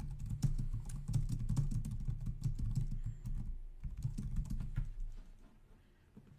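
Typing on a computer keyboard: a quick, uneven run of keystrokes that stops about five seconds in.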